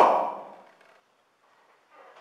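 The tail of a man's loud shout ringing out and fading in a room's echo over the first half second, then only faint room sound.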